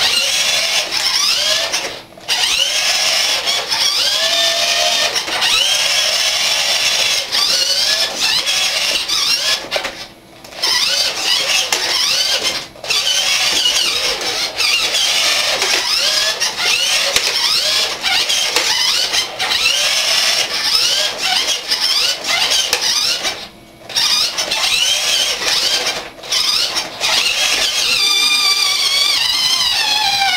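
1980s Tandy radio-controlled toy truck's small electric motor and gearbox whining, the pitch rising and falling over and over as the truck speeds up and slows. The motor cuts out briefly a few times, for example about two seconds in and again around ten seconds in.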